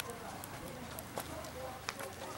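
Footsteps on a cobblestone street: four sharp steps, about one every half second or so, with faint voices in the background.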